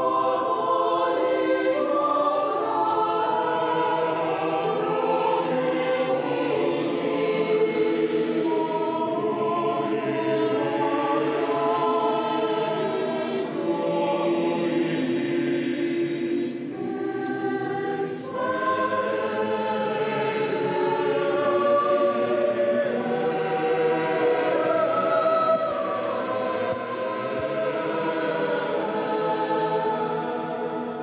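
Choir singing sacred music in several voice parts at once, with long held notes. A few brief high clicks sound over the singing.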